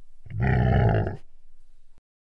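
A bear roar sound effect, about one second long, starting about a quarter second in.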